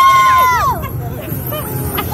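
A woman's long, high-pitched excited squeal that rises, holds, and falls away less than a second in, followed by background crowd chatter.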